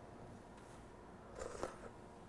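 A short slurp as hot soup is sipped from a spoon, about one and a half seconds in, against quiet room tone.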